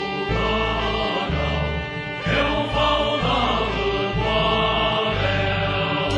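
A Vietnamese revolutionary song: a choir singing over a band, with a steady, stepping bass line.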